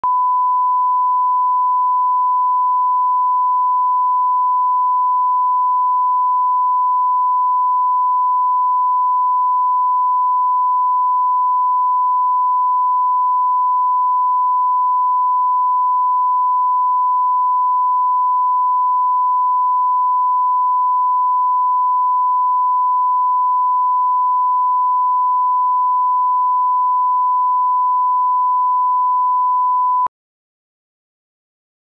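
A 1 kHz line-up test tone, the reference tone that runs with SMPTE colour bars. It is a single steady pure beep at one unchanging pitch, held without a break.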